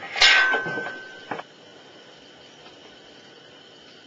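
A sharp metallic clank about a quarter second in, ringing on as one steady tone for about a second before a second, softer knock, as the electric motor and its adapter plate hanging on an engine-hoist chain are handled. After that only a faint steady hiss.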